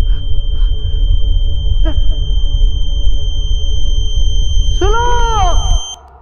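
Dramatic film-score drone: a heavy low rumble under a steady high ringing tone, which cuts off abruptly near the end. Just before it stops, a woman's sobbing cry rises and falls in pitch.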